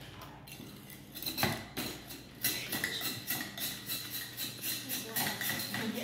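Serrated bread knife sawing and scraping at a block of clear ice, in rapid repeated rasping strokes that begin about a second and a half in.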